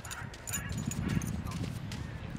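Footsteps on beach sand: irregular soft steps over a low rumble.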